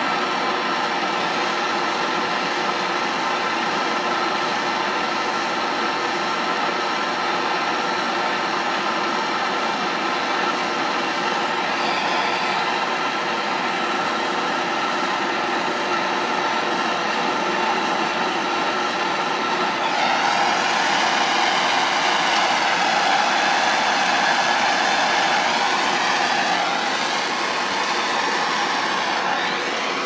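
Handheld gas torch burning with a steady roaring hiss as its flame heats the end of a shotgun's magazine tube to loosen the threaded plug. It gets a little louder about twenty seconds in.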